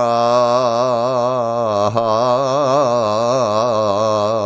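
A man singing one long held note of a traditional Greek folk song, its pitch wavering in quick ornaments, with steady lower tones beneath it.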